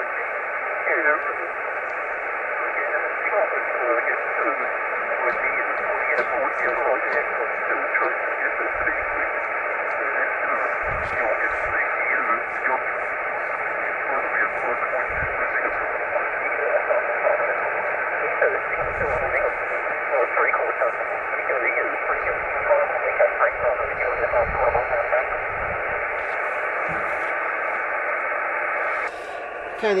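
Single-sideband voice received on the 2.4 GHz band from a Yaesu FT-847 transceiver's speaker: a distant station talks faintly under steady receiver hiss, squeezed into a narrow telephone-like band, on a signal with a lot of QSB (fading). The received audio cuts off about a second before the end.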